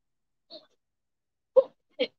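Near silence, broken by a faint tick about half a second in and a brief human vocal sound near the end.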